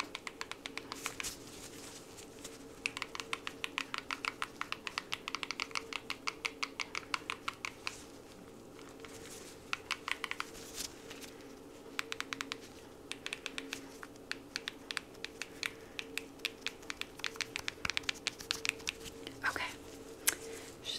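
Gloved fingers tapping rapidly on keys, a quick run of clicks at several per second. The runs go on for a few seconds at a time, with short pauses.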